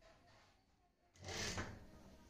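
Industrial sewing machine running in one short burst of stitching, under a second long, a little past halfway, as a pleat is stitched down in the hem.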